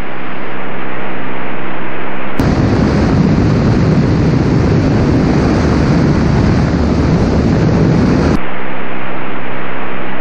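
Single-engine light aircraft (Inpaer Conquest 180) engine and propeller heard as a steady droning hum inside the cabin. About two and a half seconds in, the sound switches for roughly six seconds to a louder rush of wind and engine noise on an outside-mounted camera, then returns to the cabin hum.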